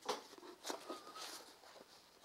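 Faint rustling and a few soft brushes of a small, old hardbound hymn book being handled and opened in the hands.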